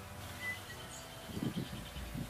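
Quiet background with a few faint, short, high bird chirps, and a brief low murmur about halfway through.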